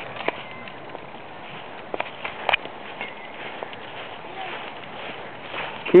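Steady outdoor background noise with a few scattered faint clicks and knocks.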